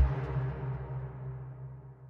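The last notes of an electronic beat, a low sine-wave bass and synth, ringing on and fading away steadily after playback stops, heavily bass-enhanced by the Slam 2 plugin.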